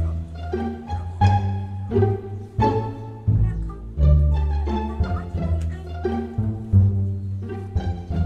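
Background music: plucked and bowed strings over a low bass line, in short distinct notes.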